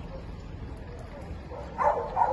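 A dog gives a brief yip near the end, over a steady low outdoor background.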